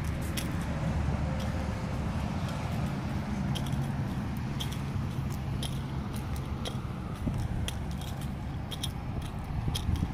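Low steady rumble of truck engines and highway traffic, with scattered short, sharp high clicks throughout.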